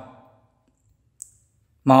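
A pause in a man's narration: his voice fades out, a single short, sharp click comes about a second in, and he starts speaking again near the end.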